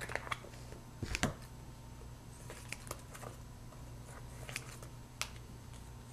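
Scissors snipping into a thin plastic packet and the plastic crinkling as hands handle it: scattered light clicks and rustles, the loudest about a second in.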